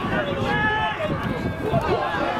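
Men's voices shouting and calling out across an open football pitch during play, with several drawn-out calls.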